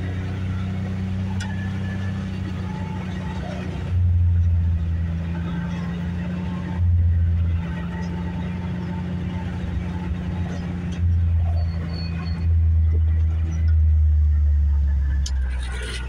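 Side-by-side utility vehicle's engine running steadily at cruising speed while driving along a dirt track, heard from inside the cab, with several louder low rumbles of a second or more coming and going.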